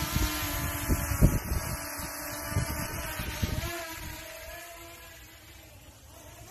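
DJI Mini SE quadcopter on Master Airscrew stealth propellers: the whine of its propellers fades away as it climbs, with wind buffeting the microphone in the first few seconds. The owner finds these propellers quieter than the stock ones.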